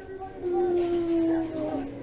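A young child's drawn-out vocal call, one long held "heyyy" that glides slightly down in pitch, given in answer to being coaxed to say hey.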